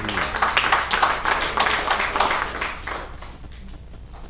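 A small congregation clapping, the irregular claps thinning out and fading away about three seconds in.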